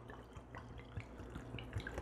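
A thin stream of alcohol trickling from a glass jug into a mason jar of chopped fresh roots, faint, with small scattered drips.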